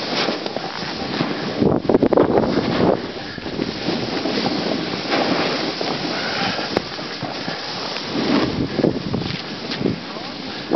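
Wind buffeting the microphone of a camera carried by a snowboarder riding through powder, mixed with the rushing hiss of the board and spraying snow, surging louder about two seconds in and again near the end.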